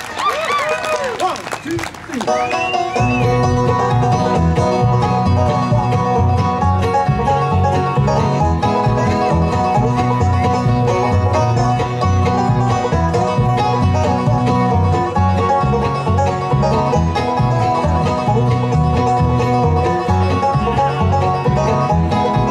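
Bluegrass band playing live, with banjo, fiddle, upright bass and acoustic guitar, and no singing. The opening couple of seconds are thinner, with sliding high notes; at about three seconds the full band comes in with a steady driving rhythm and a strong bass line.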